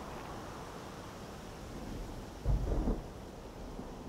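A short, low rumble of distant thunder about two and a half seconds in, over a steady outdoor hiss.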